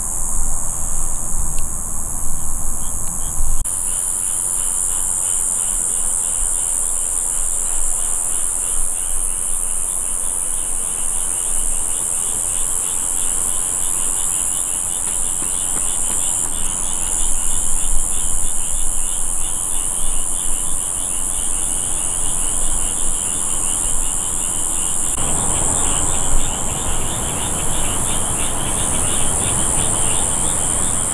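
Night-time insect chorus: a steady high-pitched hiss, joined about four seconds in by a rapid, evenly pulsing trill. A low rumble is underneath at the start and again near the end.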